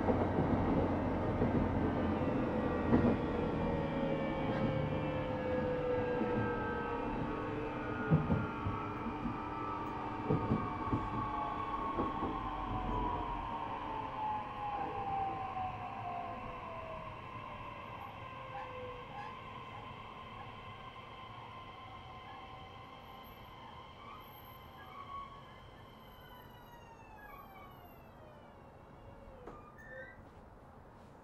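E131-600 series electric train's traction motors and inverter whining as the train brakes, several tones sliding steadily down in pitch and fading as it slows, with a few knocks in the first dozen seconds. Near the end the remaining tones drop away steeply as the train comes to a stop.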